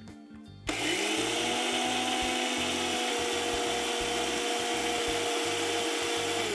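Electric mixer grinder blending curd and water into buttermilk in its small steel jar. The motor starts about a second in, quickly rising in pitch, then runs steadily at full speed.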